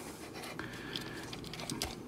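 Plastic parts of a Planet X PX-09S Senectus transforming robot figure being handled: faint scattered clicks and scraping as pieces are untabbed and slid into position.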